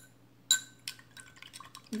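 A painted metal tin can being handled, giving a few light metallic taps with a short ring; the loudest comes about a quarter of the way in, followed by fainter ticks.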